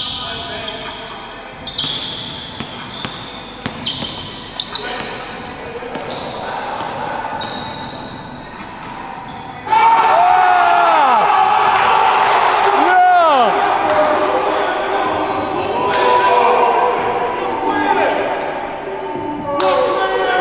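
A basketball bouncing on an indoor court, with sharp knocks and people's voices in a large gym. About ten seconds in it turns much louder, with excited shouting and yelling from the players.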